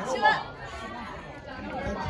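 Indistinct talking and chatter from several people, loudest in the first half-second, then quieter murmuring.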